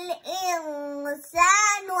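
A young girl chanting Quran recitation in melodic style, drawing out a long held vowel whose pitch sinks slowly. After a brief breath a little past a second in, the next chanted phrase rises.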